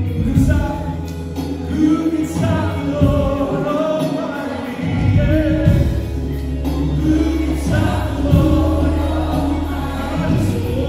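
Live contemporary worship music: a male lead voice and a group of backing singers sing together over a band of keyboard, drums and bass, with the bass growing heavier about halfway through.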